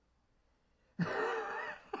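Near silence for about a second, then a woman laughs out loud, suddenly and for about a second.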